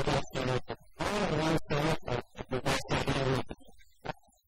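A man speaking into a microphone in short phrases.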